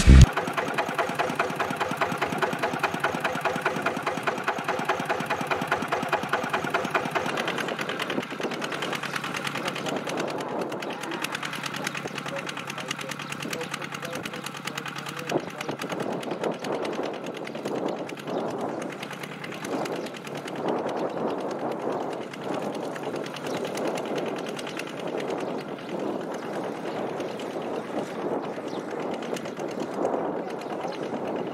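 Single-cylinder diesel engine of a Kubota two-wheel walking tractor running under load as it pulls a disc plough through soil, with a fast, even beat.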